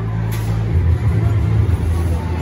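Pinball arcade background noise: a loud, steady low rumble from the machines and the room, with one short click about a third of a second in.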